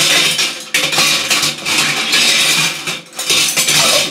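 Dishes and cutlery clattering in a kitchen, over a continuous rushing noise that drops out briefly a few times.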